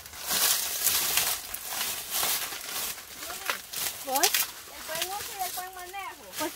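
Dry corn stalks and husks rustling and crackling in a run of short bursts over the first three seconds or so. A voice sounds briefly after that, with a rising call about four seconds in and a little more near the end.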